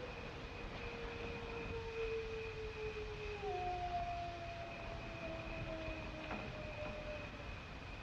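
Eerie suspense music from an old film soundtrack: a few long, held tones that slide slowly downward in pitch and overlap, with a higher tone coming in about halfway through. A faint steady high whine and hiss from the old soundtrack run underneath.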